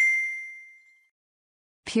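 A single bright, bell-like ding, the notification chime of a subscribe-button animation, ringing out and fading away within about a second.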